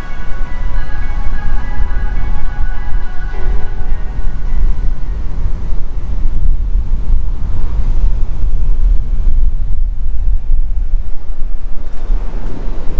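Strong wind buffeting the camera's microphone, a loud low rumble that gusts up and down throughout. Soft ambient music fades out over the first few seconds.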